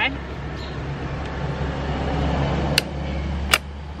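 Two sharp snips of hand clippers cutting the lid fastening of a plastic storage tote, under a second apart near the end, over a steady low rumble.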